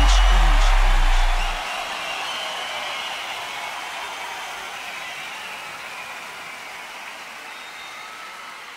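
The tail of an EDM remix: a deep sustained bass and short falling synth notes cut off about a second and a half in, leaving a wash of noise that slowly fades away.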